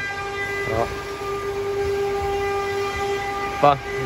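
A steady, held horn-like tone of one unchanging pitch lasting about three and a half seconds, cutting off shortly before the end.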